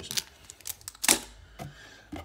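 A few light clicks and a plastic crinkle as a small clear plastic bag of trading-card counters is handled and set down, the sharpest click about a second in.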